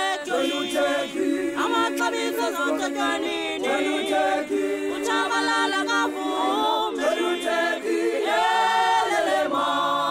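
Unaccompanied group of voices singing in harmony, a cappella choir style, with several parts holding chords together and moving to new chords every second or so.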